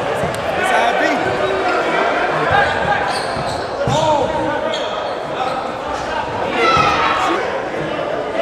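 Basketball dribbled on a hardwood gym floor, the bounces ringing in a large hall over the talk and calls of a packed crowd of spectators.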